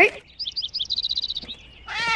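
Small bird chirping in a cartoon soundtrack: a quick run of high twittering notes that stops about a second and a half in.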